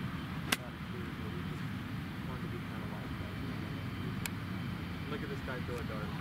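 A golf wedge strikes the ball once about half a second in, a single sharp click, over a steady outdoor background hum. Fainter ticks follow later.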